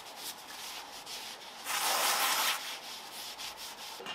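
Hand rubbing on the flat metal gasket face at the front of a Ford engine block as it is cleaned up after the old gasket was scraped off: scrubbing and wiping strokes, with one longer, louder stroke about two seconds in.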